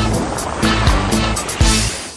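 Advert music with a steady bass line and a few drum hits.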